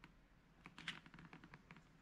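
Near silence: room tone with a few faint, light clicks scattered through it.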